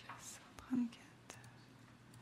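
Faint whispering voices in a quiet meeting room. About three-quarters of a second in there is one short, louder low sound, and a couple of light clicks follow.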